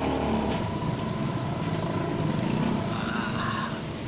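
Street traffic noise: a steady low rumble of passing vehicles.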